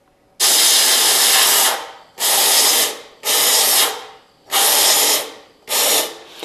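Pneumatic cavity-spray (anti-corrosion) gun hissing in five trigger bursts, each cut off sharply. The first burst lasts about a second and a half and the rest under a second each, as compressed air atomises the anti-corrosion compound.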